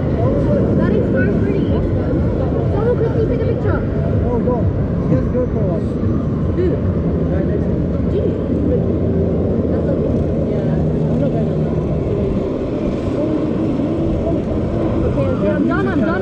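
Steady wind rumble on the microphone of a camera carried high up on a Mondial Turbine fairground ride, with indistinct riders' voices throughout.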